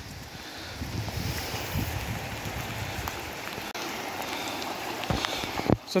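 Steady rush of floodwater running across a flooded road and lawn in heavy rain, with wind rumbling on the microphone. Two brief knocks near the end.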